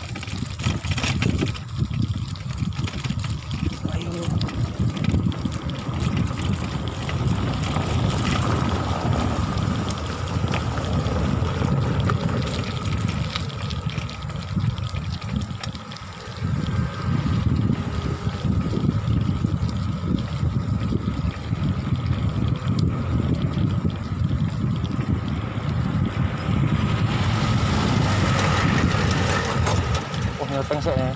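Wind buffeting the microphone of a camera riding along on a moving bicycle: a steady low rumble that rises and falls in gusts, easing briefly about halfway through.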